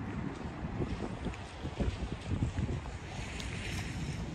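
Wind blowing on the microphone in uneven gusts, strongest in the middle, with a soft hiss near the end.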